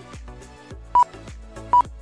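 Two short, high electronic beeps about three-quarters of a second apart, about a second in and near the end, over quiet background music with a steady beat: the RC lap-timing system's beep as cars cross the timing line.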